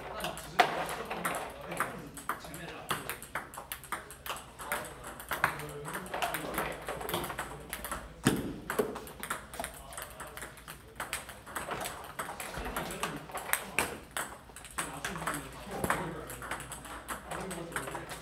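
Table tennis balls being hit in a multiball drill: quick, irregular clicks of the plastic balls off the paddles and bouncing on a Stiga table, several a second.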